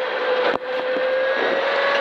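A rally car's engine heard from inside the stripped cabin, pulling hard with its note rising slowly under acceleration over road and cabin noise. A single sharp knock comes about half a second in.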